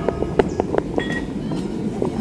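Footsteps walking on a hard floor, with a short high electronic beep about a second in.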